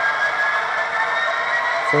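Sound-equipped HO-scale Athearn Genesis model diesel locomotive running in reverse: a steady engine hum with a thin whine that rises slowly in pitch as the throttle is stepped up.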